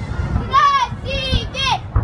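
Children in a crowd giving high-pitched shouts and squeals, about three short cries that rise and fall, without clear words. Low thuds of the fireworks salute sound underneath.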